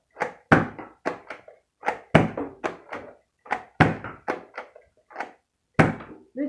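Stock Eon Pro foam dart blaster being primed and fired over and over: a rapid run of sharp plastic clacks, several a second and unevenly spaced, from the top priming slide working and darts being fired.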